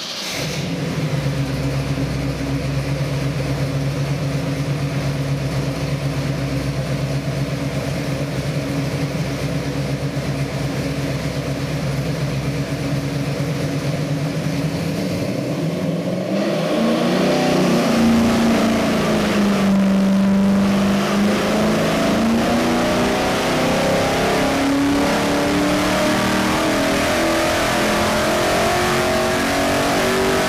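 461 cubic-inch Pontiac stroker V8 with a hydraulic roller camshaft running on an engine dynamometer. It holds a steady speed around 2,000 rpm for about half the time, then the revs climb steadily under load in a dyno pull, rising past 5,500 rpm by the end.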